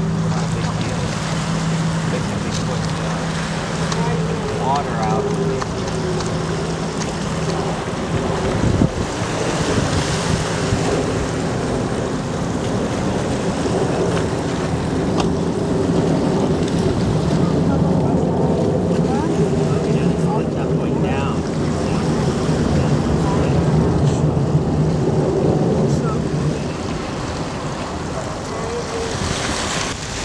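Distant jet roar from the Blue Angels' F/A-18 Hornets flying in formation: a steady low rumble that swells in the second half, with wind buffeting the microphone.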